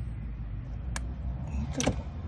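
Two sharp clicks, about a second apart, the second louder: spark plug lead boots being snapped onto the terminals of a replacement ignition coil on a Ford Fiesta. A steady low rumble runs underneath.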